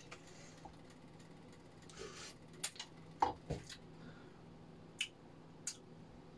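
Faint scattered clicks and a couple of light knocks of a metal spoon against a stainless-steel cooking pot, with a brief soft hiss about two seconds in, over a low steady hum.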